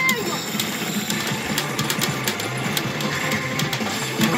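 Saint Seiya smart pachinko machine playing its game music and sound effects during a reel spin, over a steady run of quick, irregular clicks from steel balls being fired and bouncing through the pins.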